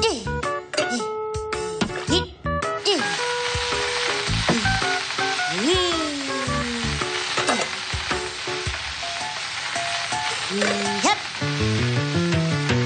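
Beaten egg sizzling in a hot frying pan, a steady hiss that starts about three seconds in. Light background music with bouncy notes and sliding tones plays throughout.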